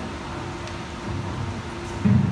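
Low, uneven rumbling of handling noise from a handheld microphone as it is moved and passed along a table, over a steady faint hum from the sound system.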